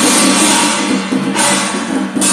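Chinese temple ritual percussion: loud, long cymbal crashes over steady drumming. One crash runs for about the first second and a half, then a brief dip before the next.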